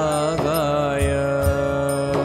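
Devotional Indian music backing a sung Jain Sanskrit chant: steady held tones under a gliding melodic line, with a few soft low drum strokes.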